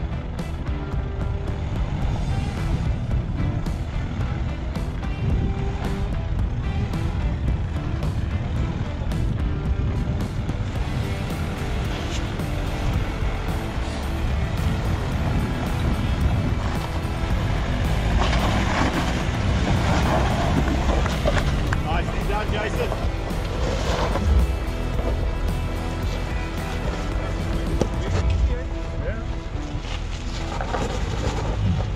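A 4x4 pickup's engine running at low revs as it crawls up over rocks. Music and faint voices are mixed in.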